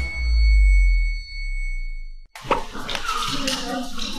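A deep cinematic boom with a steady high ringing tone, fading out over about two seconds. After a brief break, busy sound of voices over background music follows.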